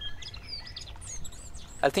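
Small birds chirping in the background: many short, high chirps that rise and fall in pitch, scattered through the pause, over a steady low background rumble.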